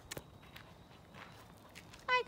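Faint footsteps on a gravelly lane: a couple of sharper scuffs right at the start, then a few soft steps about half a second apart.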